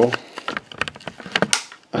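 Handling noise of a camera being taken off its tripod: a scattered run of sharp clicks and knocks, the loudest about one and a half seconds in.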